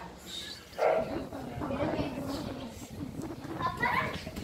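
Indistinct talking of several people in the background, with a short louder call about a second in.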